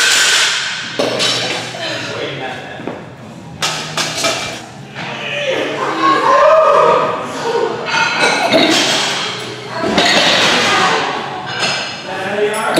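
Weight-room background of music and voices, broken by several sharp thuds and clanks of loaded barbells and bumper plates.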